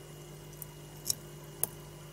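Faint clicks from tweezers handling a tiny smartphone camera module under a microscope: three small clicks about half a second apart over a steady low hum.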